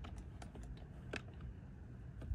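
Steering-wheel control buttons of a 2018 Ford F-150 clicking as they are pressed, twice: about half a second in and again just after a second, over a faint low rumble.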